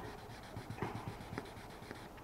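Faint, irregular rubbing strokes of 1500-grit sandpaper wrapped on a short wooden stick, worked by hand over a high spot in a car's clear coat to level it flat.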